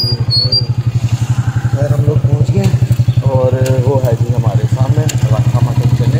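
Motorcycle engine idling with a steady, rapid beat.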